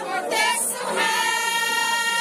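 A group of women singing together, holding one long note from about a second in.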